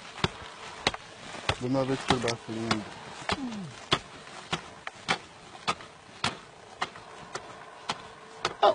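Repeated strikes of a digging tool into hard, dry mud, about two blows a second, loosening soil to dig down to a mudfish buried in its mud cocoon. A man's voice murmurs briefly about two seconds in.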